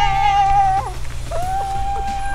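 A woman's long, high, drawn-out cheering calls. The first fades out just under a second in and a second begins about halfway through, over the low steady running of an approaching camper van's engine.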